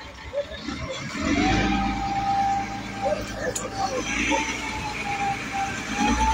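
A vehicle or machine engine running with a low rumble that sets in about a second and a half in, with a steady whine held over it and scattered voices in the background.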